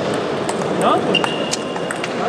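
Table tennis ball ticking off bats and table during a rally, a few sharp clicks with the loudest about one and a half seconds in. A brief high squeak starts about a second in, over voices in a large hall.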